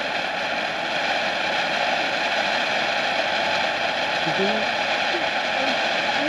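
Miracle Zoo Box rhino fountain firework spraying sparks with a steady, even hiss.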